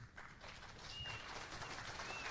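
Faint, scattered audience applause that grows a little louder, a live crowd's response to the end of a panel answer.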